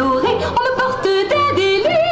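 Song playing: a woman's singing voice carrying a melody, its notes changing every fraction of a second, over instrumental accompaniment.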